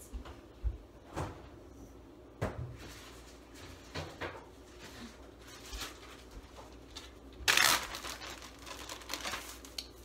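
Scattered knocks and clicks of someone moving about a kitchen out of view, doors and items being handled, with a louder noisy burst lasting about half a second roughly seven and a half seconds in.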